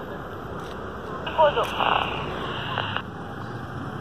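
A short voice reply comes through the speaker of a Baofeng 888s handheld walkie-talkie about a second in. It is thin and broken up by radio static, and the static switches on and off with the transmission, lasting under two seconds. A steady hiss sits underneath throughout.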